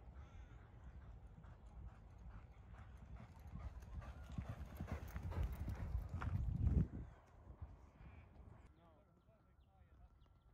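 Hoofbeats of a racehorse galloping on a training track, a rapid run of low thuds that grows louder as the horse comes close and passes, peaking about six seconds in. The sound stops abruptly just before seven seconds.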